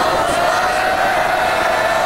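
A crowd of voices calling out, with one high voice held on a steady note.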